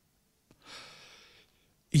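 A man's breath drawn in close to a handheld microphone, soft and about a second long, just after a faint click from the mouth, in a pause between read phrases.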